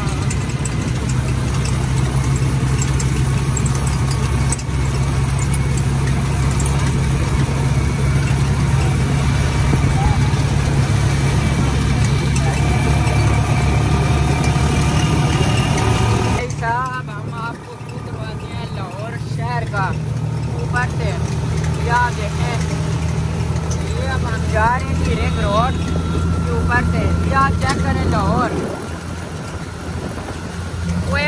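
The engine of a chingchi motorcycle rickshaw running steadily, heard from the passenger seat, with street noise around it. About halfway through the rushing noise drops away suddenly, and short high chirping sounds come and go over the continuing engine.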